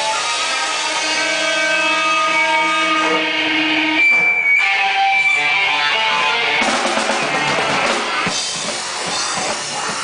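Live rock band playing: electric guitars ring out held notes for the first few seconds, then about two-thirds of the way through the sound turns thicker and noisier as distorted guitars and drums crash in.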